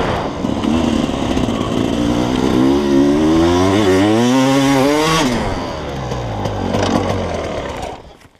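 Enduro motorcycle engine under acceleration, its pitch climbing steadily with a brief dip partway, then climbing again before dropping off the throttle about five seconds in and running at lower revs.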